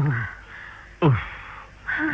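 Short, harsh vocal cries from a person in a struggle, three of them about a second apart, each falling sharply in pitch.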